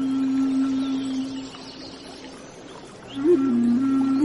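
Slow ambient background music: a long held low note fades out about a second and a half in, and after a quieter stretch a new note swells in with a small bend in pitch near the end.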